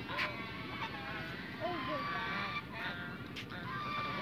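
Domestic geese calling: a loud honk right at the start, then quieter, softer calls from the flock.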